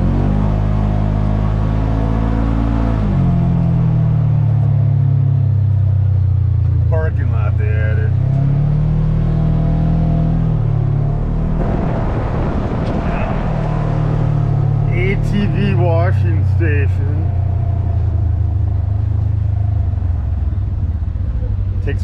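Polaris General XP 1000 side-by-side's twin-cylinder engine running as it drives, its pitch falling as it slows about three seconds in, then rising and falling again with the throttle. A rush of tyre noise on gravel comes in around the middle.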